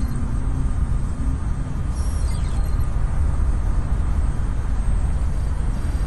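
Steady, deep city rumble in a short film's soundtrack, as held music notes fade out over the first two seconds.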